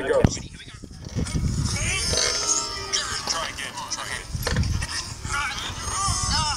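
Voices talking over background music, with a sharp click shortly after the start.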